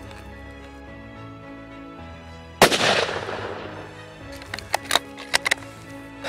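A single hunting rifle shot about two and a half seconds in, dying away in an echo over about a second, followed by a few sharp clicks. Background music runs underneath.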